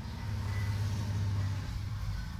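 A low, steady engine hum, swelling a little in the middle and easing off near the end.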